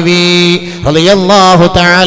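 A man preaching in Malayalam in a drawn-out, chanting sing-song, holding long steady notes, with a short break about halfway through.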